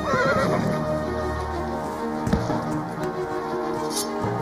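A horse neighs once near the start, a wavering call, over background music with held notes. A single sharp knock about two seconds in.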